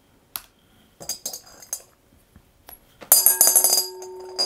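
A few faint clicks, then about three seconds in a coin drops into a glass mixing bowl. It clinks and rattles against the glass, and the bowl rings on as the coin spins and wobbles before settling.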